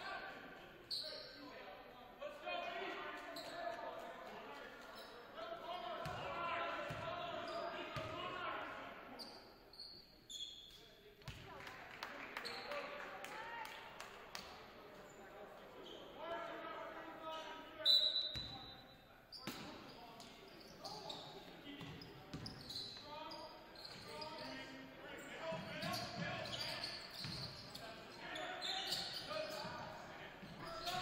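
Basketball game in a gym: indistinct voices of players and spectators echoing in the hall, with the ball bouncing on the hardwood and scattered short knocks. A brief high tone stands out about 18 seconds in.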